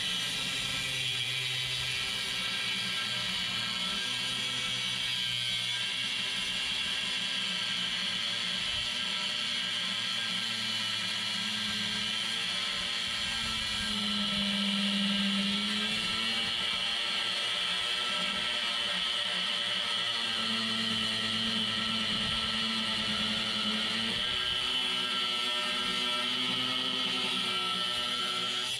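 Handheld angle grinder with a cut-off wheel cutting through a metal bar, its motor whining steadily, the pitch wavering slightly as the wheel bites into the cut.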